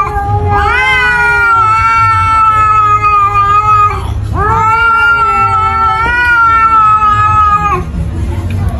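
Domestic cat yowling in a face-off with another cat: two long, drawn-out calls, each about three and a half seconds. Each rises in pitch at the start and then holds level, an aggressive warning.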